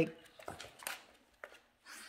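Faint scuffling and a few soft clicks from two dogs play-wrestling on a hardwood floor.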